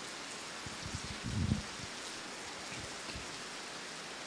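A steady, even hiss with a soft low bump about a second and a half in.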